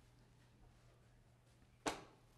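Faint room tone with a steady low hum, then a single short, sharp knock near the end.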